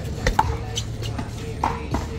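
A one-wall handball rally with a big blue rubber ball: several sharp smacks of the hand striking the ball and the ball hitting the wall and concrete court, the loudest about half a second in, over a steady low hum.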